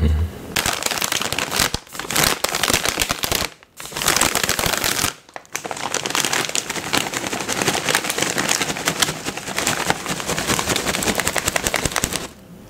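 Close-miked ASMR mouth sounds: a dense, rapid crackle of small clicks, with two short pauses about three and a half and five seconds in.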